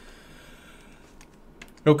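Low room tone with a few faint computer keyboard clicks in the second half, then a man says "Okay" right at the end.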